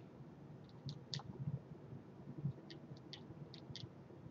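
Quiet room tone with a faint low hum and a handful of small, faint clicks: three in the first second and a half, then about five more close together near the end.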